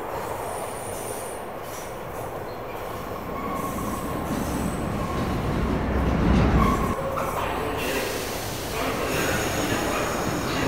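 New York City subway train running, its steel wheels squealing in thin high tones over a steady rumble. The rumble builds to its loudest about six seconds in, then eases off a little just before seven seconds.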